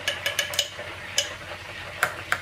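Pork leg deep-frying in hot oil: a faint steady hiss with a quick cluster of sharp pops in the first half second and another single pop about a second in.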